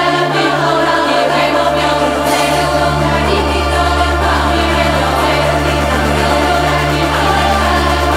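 Melodic techno from a DJ mix playing loud and steady over a sustained bass line; the deep bass drops away briefly at the start and returns about two and a half seconds in.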